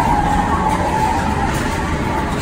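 Tomorrowland Transit Authority PeopleMover car rolling along its elevated track: a steady rumble with hiss.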